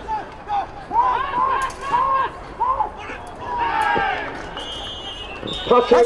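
Voices of players and sideline teammates yelling during an American football play: a string of short, arching shouts, then a longer falling shout about four seconds in. A brief high steady tone sounds just before the end.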